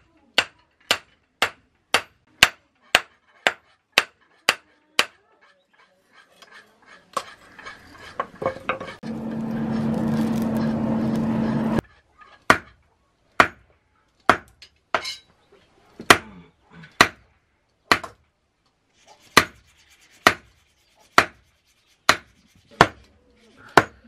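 Hand hammer striking a red-hot knife blade on an anvil in hand forging, sharp metal-on-metal blows at about two a second at first. In the middle they stop, and for a few seconds a steady noise with a low hum runs. Then the hammering resumes, slower, about one blow a second.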